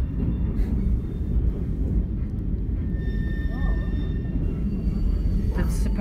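Heritage train carriage running over the track, heard from inside the carriage as a steady low rumble, with a faint thin high tone about halfway through.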